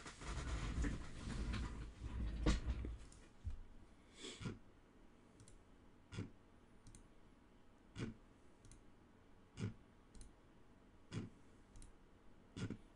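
A rustle of handling noise for the first couple of seconds, then single computer-mouse clicks about every one and a half to two seconds, each one re-running an online list randomizer.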